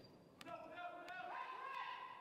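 A volleyball bounced on the gym floor before the serve: a sharp knock about half a second in and fainter ones near the end, echoing in the hall. A long drawn-out call from a voice runs over it, rising in pitch midway.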